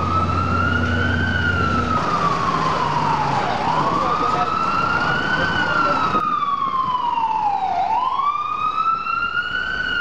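FDNY ambulance's electronic siren on a slow wail, rising and falling in pitch about every four seconds, with street traffic underneath.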